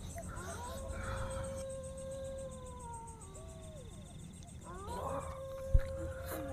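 Drawn-out howls: a long one about half a second in, held on one pitch and sagging at its end, then a short one that rises and falls, then a third starting near the end.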